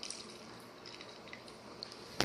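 Faint drips of liquid falling into a glass of tea, a few small separate drops over low room noise.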